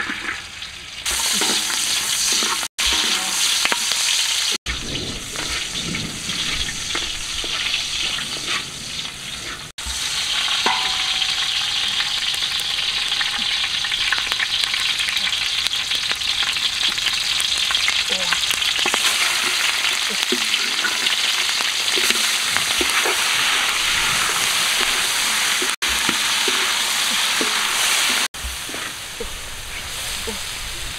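Hot oil sizzling and crackling in a large metal wok as lemongrass and fish pieces fry, stirred with a wooden spatula. The sizzling starts about a second in and cuts out abruptly several times for a moment.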